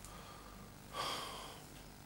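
A man's single faint breath through the nose, about a second in: a sniff at a chocolate-and-coconut-coated coconut ball held to his nose, starting sharply and fading over about half a second.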